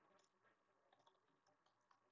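Near silence, with a few very faint clicks of typing on a computer keyboard.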